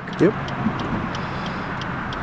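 Steady road and engine noise of a car in motion, heard from inside the cabin.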